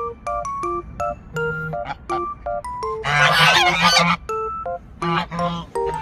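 Domestic geese honking in a loud, harsh burst about halfway through and again more briefly near the end, over a light plucked background tune.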